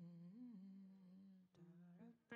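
A woman's voice humming quietly into a microphone, holding a low note with a brief rise and fall in pitch about half a second in, then moving to a slightly lower note about one and a half seconds in.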